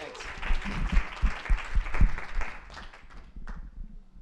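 Audience applauding, the clapping fading out about three seconds in.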